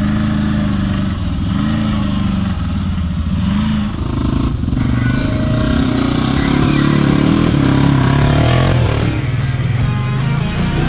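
Off-road vehicle engines running and revving in mud, with music playing over them.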